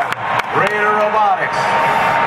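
Arena PA announcer's amplified voice calling the robot match over steady crowd noise, with a few sharp knocks in the first second.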